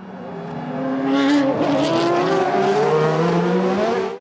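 Several DTM touring cars' 4-litre V8 engines accelerating hard out of a hairpin in close company. Their overlapping engine notes rise and fall, growing louder over the first second and then running loud.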